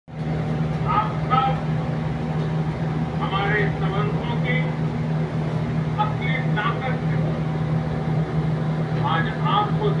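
Speech from a television broadcast in a few short phrases separated by pauses, over a steady low hum that runs throughout.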